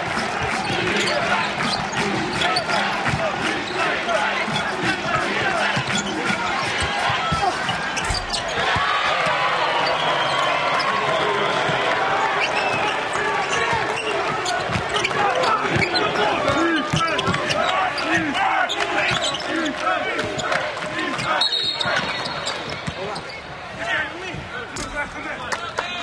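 Basketball game sound in an arena: a basketball bouncing on the hardwood court, with continuous crowd noise and voices.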